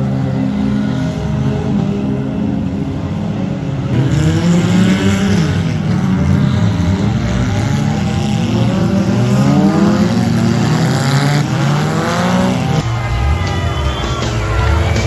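Several demolition derby cars' engines revving hard at once, their pitches rising and falling over one another as the cars spin their wheels in mud and ram each other. The engines get louder about four seconds in.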